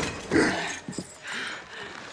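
A woman's heavy, pained breathing after a hard fall in a fight: two gasping breaths about a second apart, with faint scuffs between them.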